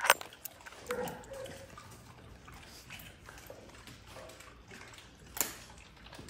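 Puppies feeding from a metal pan of raw food: scattered small clicks and knocks with brief puppy sounds, and one sharp knock about five seconds in.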